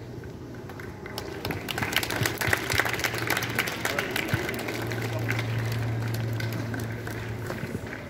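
A crowd of schoolchildren clapping: scattered claps build about a second in and taper off near the end, with voices mixed in and a steady low hum underneath.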